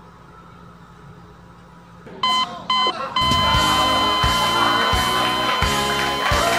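Quiet room tone, then an electronic beep sounds twice briefly and is then held as one long steady tone. Music with a regular beat comes in with the long tone.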